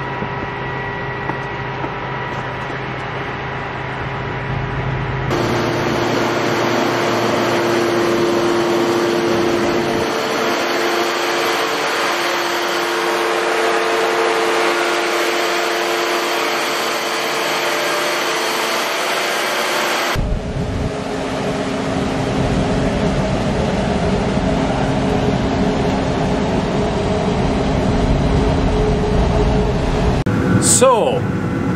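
Grain-handling machinery running steadily at a corn receiving pit, auger and dryer: a constant mechanical rush with a few steady hum tones. The sound changes abruptly twice, about five seconds in and about twenty seconds in.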